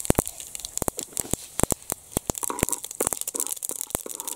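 Mustard seeds spluttering in hot oil in a pan for a tempering: sharp, irregular pops, several a second, over a light sizzle.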